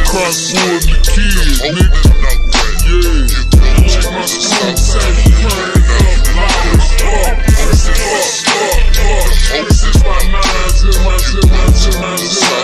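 Hip hop track: a rapping voice over a heavy bass line and a steady drum beat.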